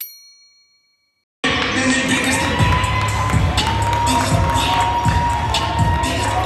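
A bright bell-like ding from a subscribe-button animation rings out and fades over about a second. After a short silence, gym sound comes in: basketballs bouncing on a hardwood court amid crowd noise and music echoing in the hall.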